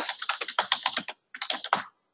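Typing on a computer keyboard: a quick run of keystrokes, a short pause just after a second in, then a few more keystrokes.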